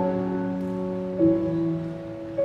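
Grand piano playing a slow passage: held chords ringing on, with a fresh note struck a little past a second in.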